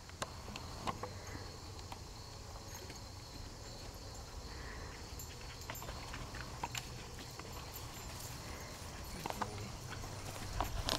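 Scattered light knocks and clicks of a dog's paws and nails on the wooden planks of an agility dog walk and A-frame, over a low steady rumble.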